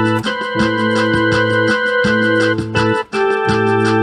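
Electronic keyboard music: held chords over a bass line, with a fast steady ticking beat. The sound drops out briefly just after three seconds in.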